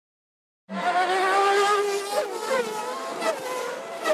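Race car engine at high revs, holding one pitch, then braking for a corner with quick throttle blips on the downshifts about halfway through and again near the end.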